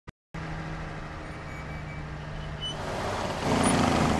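Semi-truck engine running with road noise as the truck drives along a highway. It is a steady low hum that grows louder over the last second or so.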